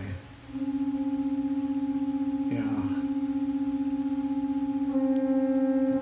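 A pipe organ sounding one steady held note. It cuts out just after the start and comes back about half a second in. About five seconds in it grows louder and brighter, with more overtones.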